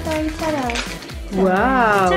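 A voice exclaiming "wow" about a second in, over background music with a steady beat.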